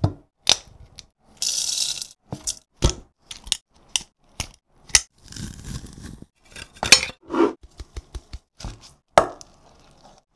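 Close-miked kitchen prep: a rapid series of sharp clicks, knocks and metallic clinks from a stainless-steel garlic press being handled, opened and closed. There is a short hiss near two seconds in and a softer squelching stretch around the middle as garlic is squeezed through the press.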